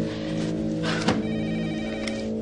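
Low, sustained background music tones. A little after a second in, a short high electronic telephone ring lasts under a second.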